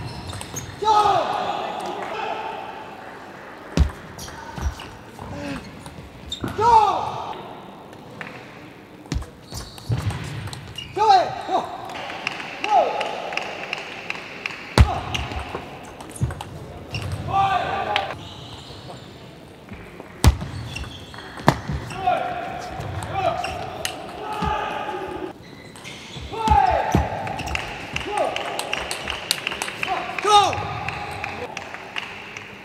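Table tennis rallies: the ball clicking sharply off the bats and the table, in short irregular runs. Between strokes, short pitched squeaks that rise and fall, the players' shoes skidding on the court floor.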